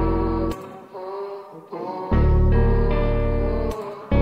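Dark melodic sample loop in D minor at 140 BPM playing: sustained chords over a deep bass. They drop away about half a second in, come back about two seconds in, and break off again just before the end.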